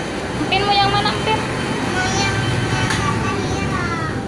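Short bits of a young child's high-pitched voice, with a steady low hum of background noise.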